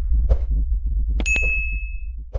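A bright, bell-like ding sound effect strikes a little past halfway and rings out briefly, over a steady low rumble from the intro.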